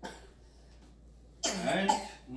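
A quiet pause in a small room, then, about one and a half seconds in, a short loud vocal burst from a person with a sharp, noisy onset.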